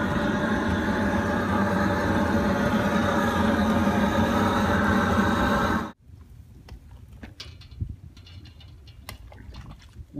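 Propane torch roaring steadily in the firebox of a wood-burning camp stove as it lights the split logs; the roar stops suddenly about six seconds in. A wood fire then crackles faintly.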